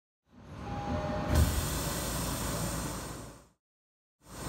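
Running noise inside a Tokyo Metro subway car: a steady low rumble with hiss and one thump about a second and a half in. It fades in just after the start and fades out shortly before the end.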